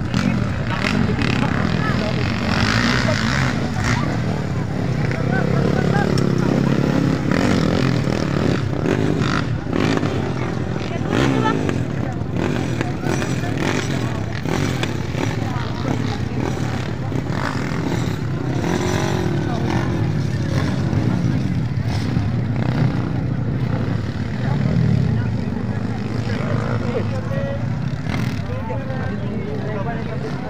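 Underbone motocross motorcycle engines revving and running, their pitch rising and falling as the bikes accelerate around the track, over spectators talking.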